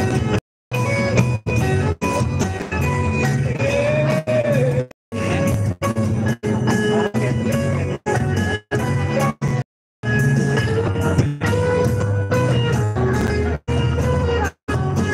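A live rock band playing through a PA, with guitar lines over a drum kit and bass, picked up by a phone microphone. The sound drops out completely for a moment several times.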